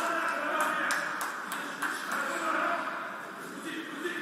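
Indistinct voices with no clear words, with a few sharp ticks in the first second and a half.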